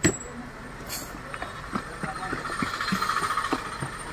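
Plastic paint tubs and lids being handled on a stone countertop: a sharp knock at the start, then scattered taps and knocks, with a busier stretch of rustling and rattling in the second half.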